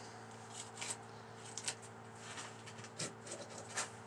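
Faint rustling with a few light clicks and taps of handling, over a steady low hum.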